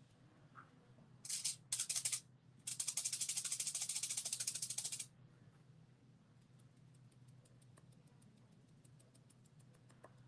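Two short bursts of rattling, then about two and a half seconds of fast, even rattling that stops suddenly, over a low steady hum.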